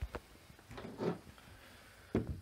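Faint movement noise from someone walking on carpet while holding the camera: a short click at the start and a soft muffled bump about a second in.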